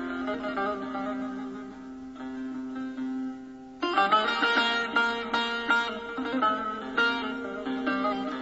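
Instrumental interlude music: a steady low held note with sparse notes above it, then from about four seconds in a louder, busier passage of quick plucked-string notes.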